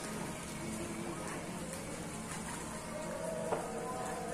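Shallow seawater lapping and rippling at the shore as a steady wash, with a single brief click about three and a half seconds in.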